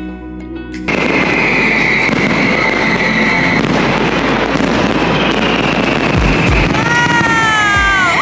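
Background music for about the first second, then a sudden cut to the loud, dense crackling of an aerial fireworks display, countless bursts running together. Near the end a few falling whistles sound over the crackle.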